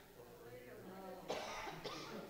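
A person coughs once a little past halfway, over faint speech.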